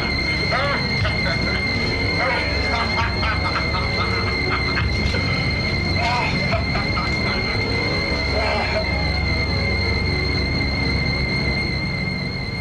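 Horror-film soundtrack: eerie background music under a steady high-pitched whine, with scattered voice sounds from the film's scene.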